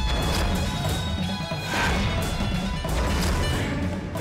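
Dramatic background score with a deep, throbbing low end and repeated crash-like hits, the loudest about two seconds in.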